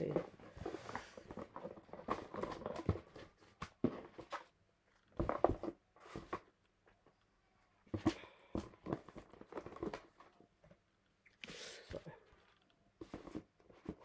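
Irregular knocks and rustles of things being handled and moved on a table, with a few faint vocal sounds from a baby who has just woken.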